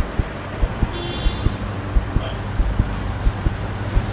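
Street traffic noise: a steady wash of road sound with scattered low thumps, and a faint high tone briefly about a second in.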